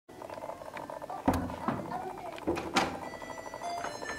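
A series of clicks and knocks from a hotel room door being handled and opened. The loudest knock comes about a second and a quarter in.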